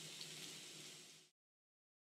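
Near silence: a faint steady hiss of room tone that cuts off to dead silence just over a second in.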